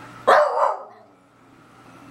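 Beagle giving one loud, short bark about a third of a second in, lasting about half a second.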